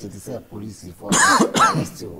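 A man's voice briefly, then two loud, rough throat clearings about a second in.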